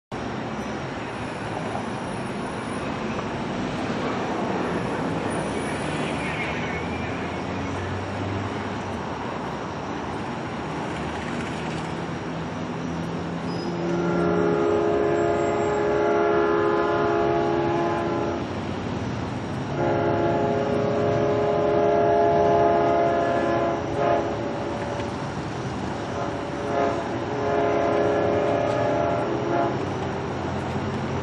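Nathan K5LL five-chime air horn on an LIRR EMD DE30AC diesel locomotive sounding for a grade crossing: two long blasts from about halfway in, then shorter and longer blasts near the end. Under it runs the steady rumble of the approaching train.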